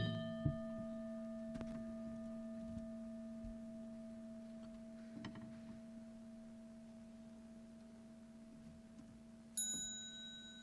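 A large Buddhist bowl bell (qing), struck just before, keeps ringing faintly. Its steady low hum and a higher overtone die slowly away. Near the end a small, high-pitched bell is struck once and rings on.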